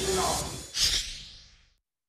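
Whooshing transition sound effect of a TV news 'LIVE' graphic stinger: a breathy swoosh, then a second short swish just before a second in, fading out to silence by about halfway through.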